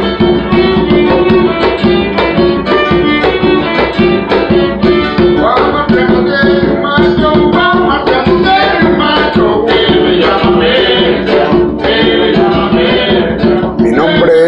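Folk string music: a violin playing over a rhythmic backing of plucked strings and percussion, with a man's voice singing along from about halfway through.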